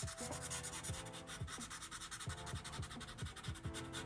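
Felt-tip marker rubbing back and forth on paper in quick, even strokes, filling in a solid black shaded area.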